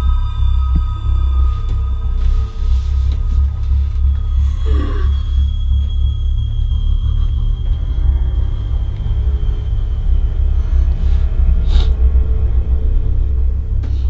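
Dark, suspenseful film score: a deep rumbling drone with thin, sustained high tones held over it.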